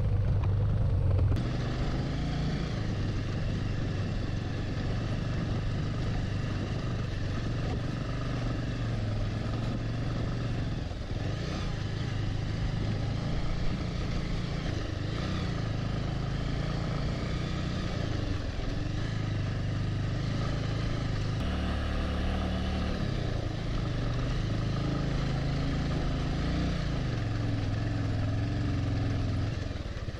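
Single motorcycle engine running steadily at low speed while the bike is ridden over a rough, rocky mountain track, recorded from on the bike. The engine note changes abruptly about a second in and again about two-thirds of the way through.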